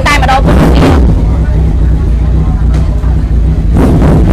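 Motorcycle engine idling steadily with a deep, even rumble.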